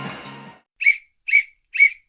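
Background music fading out, then three short, high whistle-like chirps about half a second apart: an edited-in sound effect.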